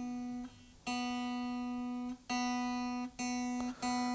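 Open B (second) string of a Squier Affinity Telecaster Deluxe electric guitar plucked four times, each note ringing steadily and then cut short. The same single note is being checked against a tuner while the intonation is set.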